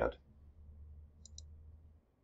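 A computer mouse button clicked twice in quick succession about a second in, over a faint steady hum.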